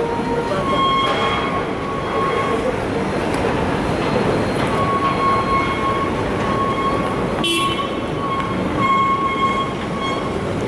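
Busy city street traffic noise, with a steady high-pitched tone held for about two seconds near the start and again through most of the second half, broken briefly a few times, and a sharp click about seven and a half seconds in.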